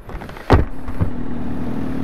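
A sudden loud thump about half a second in, then a vehicle engine running steadily with a constant hum.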